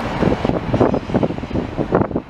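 Wind buffeting the microphone in rough, irregular gusts over the sound of a car driving past close by.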